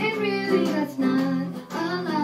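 A young girl singing a slow melody into a microphone over a guitar accompaniment.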